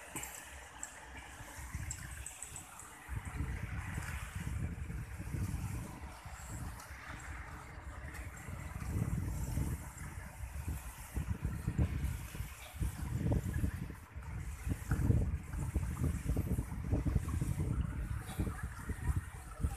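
Wind buffeting the microphone outdoors: an irregular, gusty low rumble that comes and goes in surges, starting about three seconds in, over a faint steady hiss.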